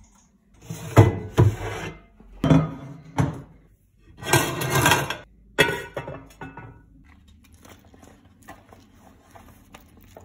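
Kitchen handling sounds from cookware and a cupboard: a run of separate knocks and clanks, a longer rattling clatter about four to five seconds in, then softer small taps and rustles.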